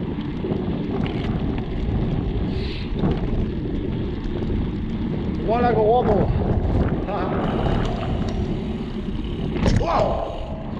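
Mountain bike riding fast on a dirt trail, heard from a handlebar camera: wind buffeting the microphone and knobby tyres rumbling over the ground, with small rattles and clicks from the bike. A brief wavering voice-like sound comes about five and a half seconds in.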